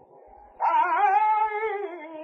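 A male flamenco singer's voice singing a saeta unaccompanied: after a short breath the long wavering, ornamented line comes back in loudly about half a second in.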